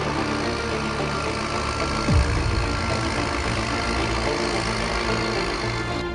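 Diesel engine of a Case IH Puma CVX 165 tractor running steadily, with a quick deep falling sweep about two seconds in.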